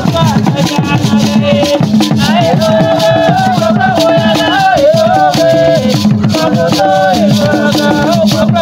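Traditional Ewe drumming played fast and without a break, with rattles shaking along and a group of voices singing.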